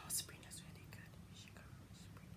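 A young woman's soft whispered voice: a short breathy hiss just after the start and a fainter one about halfway through. Underneath is quiet room tone with a low steady hum.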